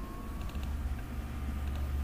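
Steady low background hum of the recording setup, with a few faint clicks about half a second in, fitting a mouse double-click.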